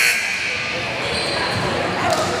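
Gymnasium game ambience: indistinct talk from players and spectators echoing in a large hall, with a basketball bouncing on the hardwood floor.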